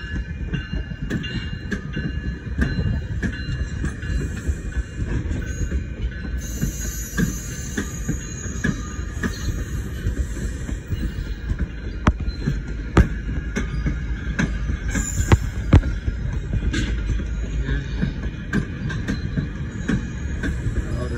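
GO Transit bilevel passenger coaches rolling past at close range: a steady rumble of steel wheels on rail, with irregular sharp clicks and knocks as the wheels cross joints on older, worn track, and a thin high wheel squeal running under it.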